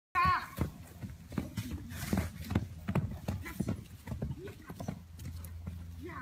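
Horse's hoofbeats: a Hanoverian mare's hooves striking the ground in a run of knocks, about two to three a second, with a short wavering high-pitched sound right at the start.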